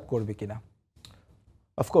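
A man speaking, trailing off about half a second in, then a pause of about a second with a few faint clicks, and speech starting again near the end.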